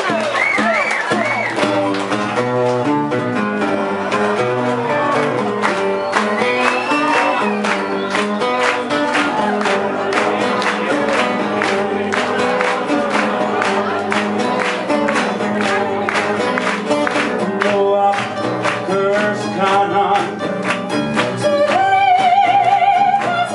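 Live acoustic band playing: guitars strumming a steady rhythmic intro, with hand claps along the beat and singing coming in near the end.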